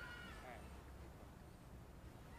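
A faint, short animal call at the very start, about half a second long and falling slightly in pitch, over a steady low rumble.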